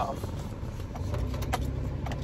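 Car engine idling, a low steady rumble heard from inside the cabin, with a single light click about one and a half seconds in.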